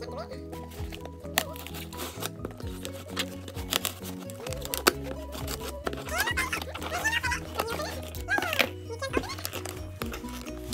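Background music with sustained notes runs throughout. Over it, scissors snip and cut through the packing tape of a cardboard box with sharp clicks and crinkling. A voice comes in during the second half.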